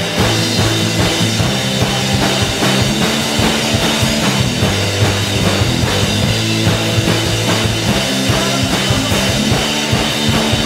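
Live rock band playing a loud, driving song on electric guitars, bass guitar and drum kit, with the drums keeping a steady beat.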